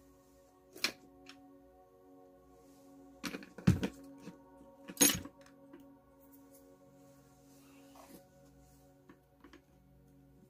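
Faint ambient music with steady held tones, and a few sharp knocks and clatters of hard objects being handled and set down on a table. There is one knock about a second in, a cluster of louder knocks around four seconds, another sharp knock about five seconds in, and small ticks near the end.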